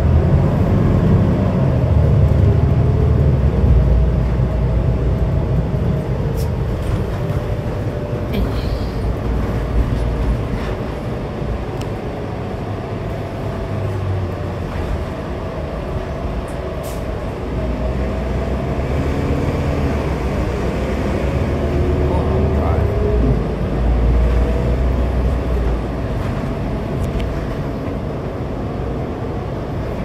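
Inside a New Flyer Xcelsior XD60 articulated diesel bus on the move: a steady low engine rumble with a drivetrain whine that slides up and down in pitch as the bus speeds up and slows, louder at the start and again past the middle, with a few short rattles.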